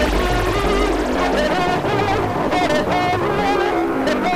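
Hardcore dance music playing from a live DJ mix: a high synth melody with wavering, bending notes over the beat, the deep bass fading away about a second in.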